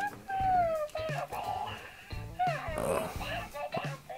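Hatchimals WOW Llalacorn interactive toy calling from inside its unhatched egg: a run of short electronic chirps and coos, several gliding down or up in pitch.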